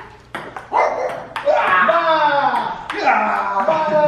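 Table tennis ball clicking off the paddles and table a few times in the first second or so, then a person's voice calling out in long, drawn-out sounds with no clear words, louder than the ball.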